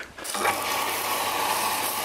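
Steady rush of running water that starts about a third of a second in and then holds level.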